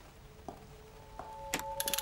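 Sparse sharp clicks and knocks that come quicker near the end, as the tusk of a mounted warthog head is pulled like a lever, with a soft held note of film score underneath.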